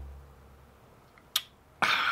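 A single sharp click about a second and a half in, then near the end a loud sudden strike followed by a ringing, slowly fading tone with several pitches, like a chime or struck glass.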